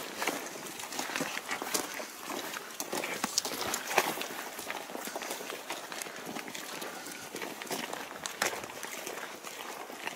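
Footsteps and the rustle and knock of clothing and gear of a person walking with the camera: an irregular stream of light scuffs and clicks, with one sharper knock about four seconds in.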